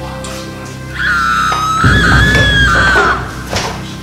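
A high-pitched scream, wavering and falling away at the end, lasting about two seconds from about a second in, over steady background music.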